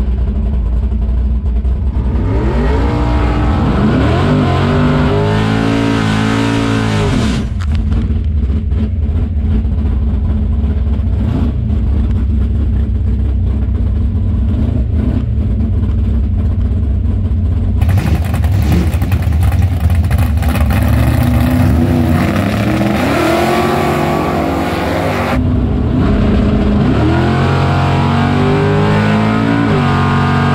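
Drag race car's engine heard from inside the cockpit, running with a heavy low rumble and revved up and down several times. In the second half there is a louder stretch with a hissing roar.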